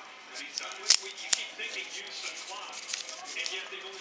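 Paper wrapping being slit with a small knife and unwrapped by hand: scratchy rustling and crinkling, with two sharp clicks about a second in.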